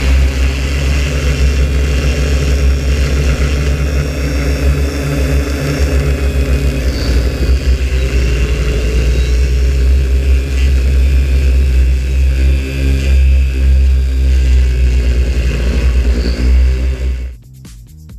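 Flirtey multirotor delivery drone's motors and propellers droning steadily in flight, heard from its onboard camera with heavy wind rumble on the microphone. The sound cuts off sharply shortly before the end, leaving quieter music.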